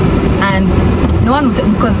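Steady low rumble of road and engine noise inside a car's cabin, with a woman's voice over it.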